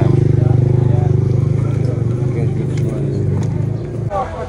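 A motor vehicle engine idling, a steady low hum with a fast even pulse, fading a little near the end.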